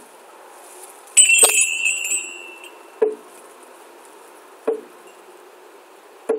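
A drum struck slowly and evenly, about one beat every second and a half. A little over a second in, a metallic ring with a brief rattle at its start sounds once, the loudest thing here, and dies away over about a second and a half.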